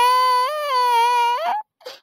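A cartoon character's high, pitched-up voice holding one long, drawn-out wail that wavers slightly and cuts off suddenly about one and a half seconds in.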